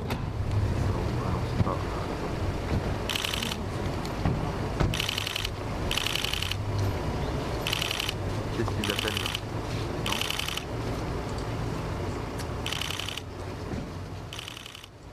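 Press photographers' camera shutters firing in short rapid bursts, about eight of them, over low background chatter from the gathered crowd.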